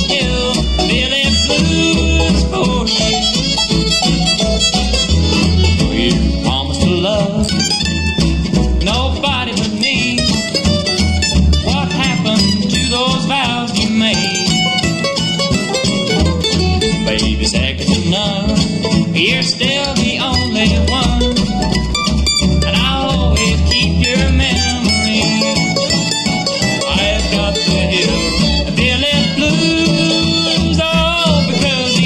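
Bluegrass band playing live on acoustic instruments: fiddle, five-string banjo, mandolin, acoustic guitar and upright bass. The fiddle leads at the start and end, with a mandolin break in the middle.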